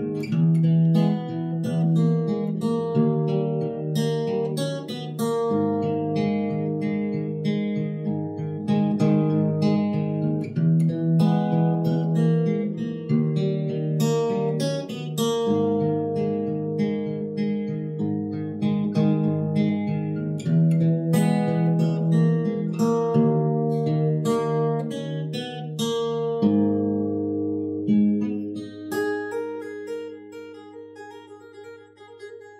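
Acoustic guitar played fingerstyle: picked chord arpeggios over a bass line, the closing passage of the arrangement, dying away near the end.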